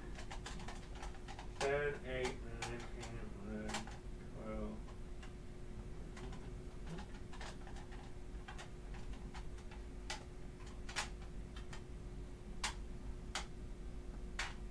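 Quiet room with a steady electrical hum. A man mumbles and hums low to himself for a few seconds near the start, and sparse light clicks and taps sound throughout.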